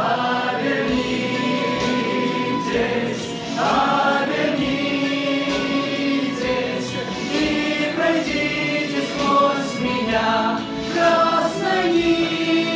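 Two male voices singing a song together, with long held notes.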